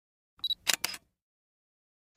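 Short intro logo sound effect: a brief high beep followed by two quick sharp clicks, all within the first second.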